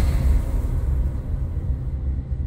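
Background music reduced to a low, rumbling bass drone with a few faint steady tones, easing down slightly.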